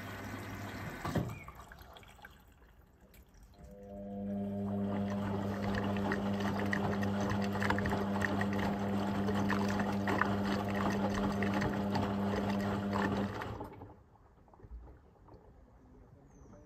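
Indesit IWB front-loading washing machine tumbling a wash load: the drum turns with water and laundry sloshing over a motor hum. It stops with a clunk about a second in. After a few seconds' pause it turns again for about ten seconds with a steady motor hum and splashing, then stops near the end.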